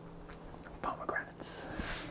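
Loose pomegranate seeds shifting and sliding in a glass bowl as it is tilted and shaken: a few soft rustles a little under a second in, then a brief higher swish.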